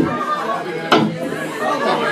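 Voices chattering in a club audience during a pause in the guitar playing, with one sharp click about halfway through.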